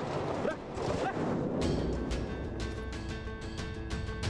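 Tense background music from the drama's score, with sustained notes swelling in about halfway through, over the scuffling and short grunts of a struggle.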